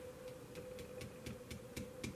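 Faint regular ticking, about four ticks a second, over a steady hum.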